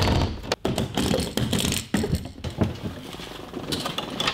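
Mechanical clicking and clacking of a hard-shell, metal-framed suitcase being opened: a quick, irregular run of latch and hinge clicks with scraping strokes.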